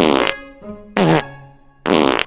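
Three short comic fart sound effects about a second apart, each a buzzy blast that falls in pitch, over light background music.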